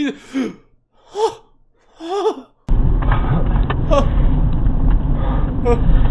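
A man gasping in short, sharp breaths mixed with a little laughter. About two and a half seconds in, a loud steady rumble of car interior and road noise from a dashcam cuts in suddenly, and a couple more gasps sound over it.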